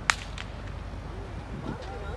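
A sharp, loud crack about a tenth of a second in, followed by a fainter second crack a moment later.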